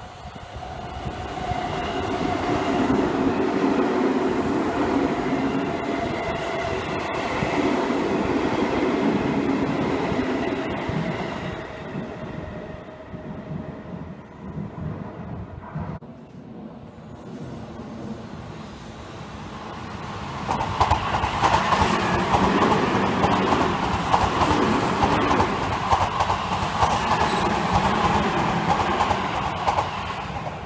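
Seibu 20000 series electric train running past, its motors whining in a few steady tones over rumbling wheel-on-rail noise. After a break, a louder stretch of train running noise with rail clatter rises about two-thirds of the way in and lasts some eight seconds.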